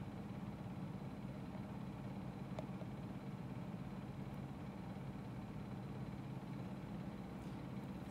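Steady low background hum of the room with no speech, and a faint click about two and a half seconds in.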